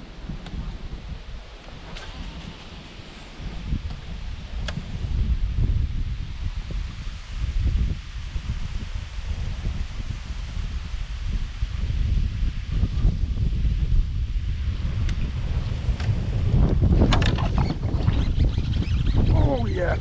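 Wind buffeting the microphone: a low, gusty rumble that grows louder over time, with a few faint clicks and a louder rush near the end.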